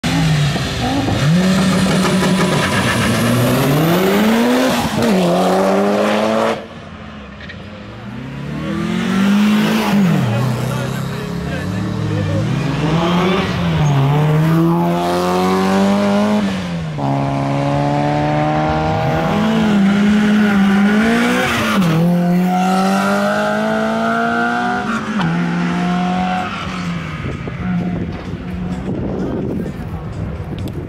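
Car engines being driven hard on a race track, pulling up through the gears: the engine note repeatedly climbs, drops at each shift and climbs again. There is a brief quieter stretch about seven seconds in.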